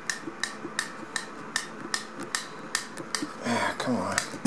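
Steady mechanical ticking, short sharp clicks at about five a second, running evenly throughout.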